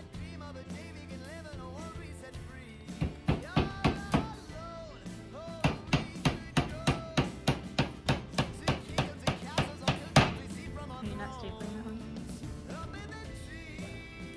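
A hammer driving nails through felt into wooden battens: a short run of about five blows, then a steady run of about fifteen quick blows, roughly three a second, ending in the loudest one. Background music with singing plays underneath.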